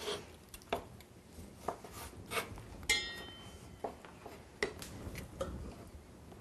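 A kitchen knife cutting segments out of a pink pomelo on a wooden cutting board: light, irregular taps and knocks of the blade on the board, one with a brief metallic ring about three seconds in.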